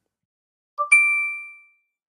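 A short electronic logo chime: a tiny lead-in note, then one bright ding about a second in that rings out and fades away within about a second.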